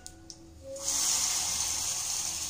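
Hot oil sizzling as tempering (oggarane) ingredients go into the pan: a loud hiss that starts suddenly about a second in and slowly fades.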